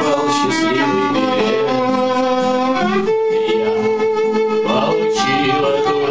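Acoustic guitar and violin playing an instrumental passage between sung verses, the violin holding a long note through the second half over the guitar accompaniment.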